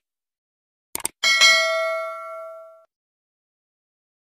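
Subscribe-button animation sound effect: a quick couple of mouse clicks about a second in, then a single bright notification-bell ding that rings out and fades over about a second and a half.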